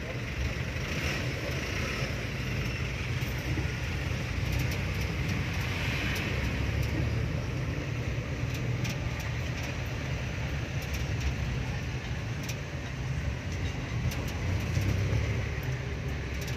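Jeepney's diesel engine running steadily at low speed in slow traffic, heard from inside the open passenger cabin, with a constant low hum and scattered light clicks and rattles.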